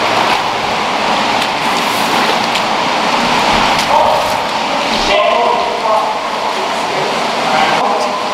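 Boots splashing through shallow water in a storm-drain tunnel over a loud, steady rush of noise, with brief indistinct voices.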